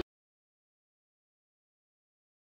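Dead silence: the soundtrack drops out entirely and nothing is heard.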